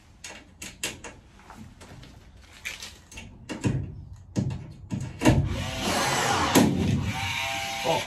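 Clicks and knocks of aluminium box section being handled and fitted into a frame, then a red cordless Milwaukee power tool runs against the aluminium for about two and a half seconds near the end.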